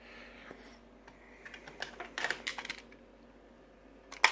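A small slide-top metal tin of guitar picks being picked up and handled, giving a quick run of small clicks and rattles about a second and a half in that lasts about a second.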